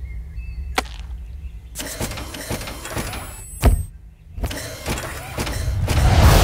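Trailer sound design: a steady low rumble under scattered clicks and ticks, with a faint high rising whine and one sharp hit a little past halfway.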